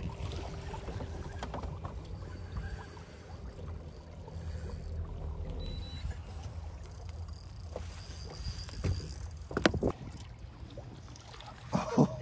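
Low, steady rumble of wind and water against a small boat's hull while a fish is being fought. Two sharp knocks come in quick succession late on.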